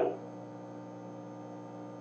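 Steady, faint electrical mains hum: a constant low buzz with a stack of even overtones and no change through the pause.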